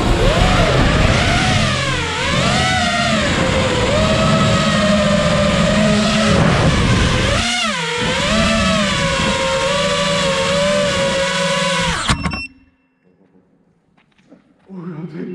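FPV quadcopter's brushless motors whining in flight, the pitch dipping sharply and climbing again twice as the throttle changes. The sound cuts off suddenly about twelve seconds in.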